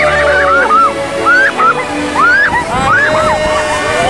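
Riders screaming on a spinning amusement ride: a string of short shrieks that rise and fall in pitch, overlapping one after another, over loud background music.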